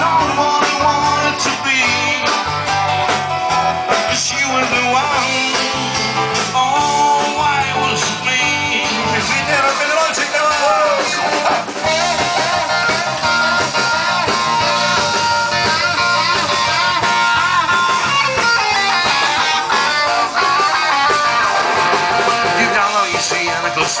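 Live band playing loud rock music: guitar carries a wavering melody over electric bass and a drum kit, with no sung words.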